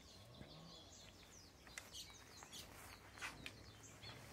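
Faint birdsong: several birds chirping in short, repeated calls, with a few soft clicks.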